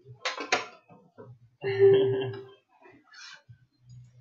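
Cardboard trading-card packaging handled and pulled open, with two sharp rips or snaps about half a second in and light rustling after. The loudest sound is a short held vocal sound from the man opening it, around the middle, ending in a laugh.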